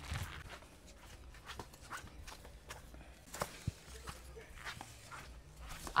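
Faint, irregular footsteps of two people walking on dirt ground, with a few soft scuffs and knocks.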